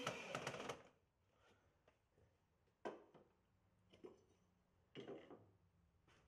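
Mostly near silence. A cordless drill runs faintly as it drives a concrete screw into a wooden window frame and stops within the first second. Three soft knocks follow, about a second apart.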